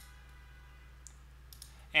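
Light computer mouse clicks: one at the start and a few fainter ones from about a second in, over a low steady hum.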